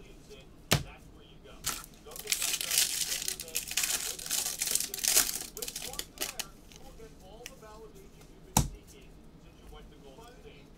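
A plastic-foil wrapper of a Bowman Draft jumbo card pack being torn open and crinkled, a dense rustling from about two to six seconds in. There is a sharp knock near the start and another near the end.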